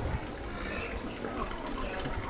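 Low, steady outdoor background noise with no distinct event in it: open-air market ambience.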